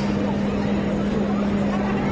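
A loud, steady, low mechanical hum fills the hall, with people talking in the background.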